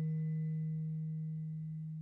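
One low, almost pure sustained note from a contemporary chamber ensemble, held and slowly fading away with a faint higher overtone above it.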